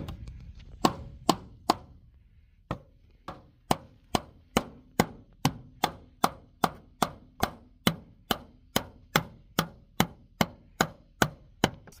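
Claw hammer striking wooden skirting boards over and over. There are a few blows, a short pause, then a steady run of sharp strikes at about two and a half a second.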